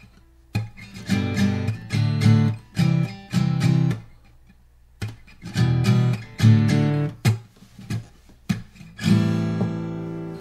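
Taylor GS Mini acoustic guitar strumming a chord progression in short rhythmic strokes. The playing pauses briefly about half a second in and again around four seconds in, and a chord is left ringing near the end.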